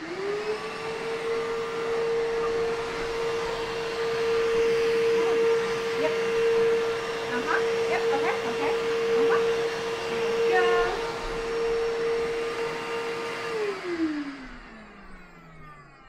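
Household vacuum cleaner switched on and running with a steady whine, then switched off about three-quarters of the way through, its motor winding down in pitch.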